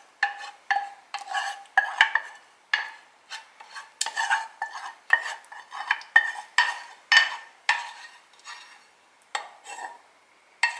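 Wooden spoon spreading thick béchamel sauce over chicken in a glass baking dish: a quick series of wet scrapes and knocks, about two a second, several with a short ringing tone from the dish.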